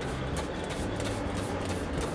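Plastic trigger spray bottle misting water onto the soil of seedling trays: a soft spray hiss over steady background noise.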